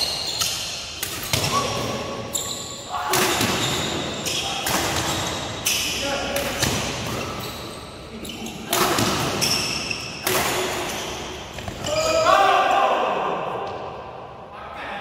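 Badminton doubles rally echoing in a sports hall: sharp racket hits on the shuttlecock about once a second, with short shoe squeaks on the court floor. Near the end a loud shout as the rally finishes.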